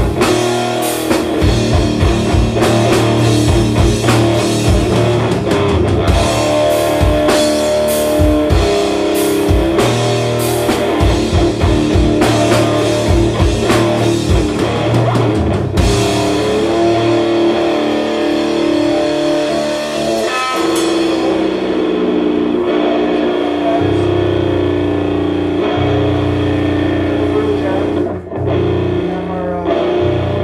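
Live rock band playing loud through a club PA: electric guitars, bass and a drum kit pounding steadily. A little past halfway the drumming drops away and held guitar and bass notes ring on.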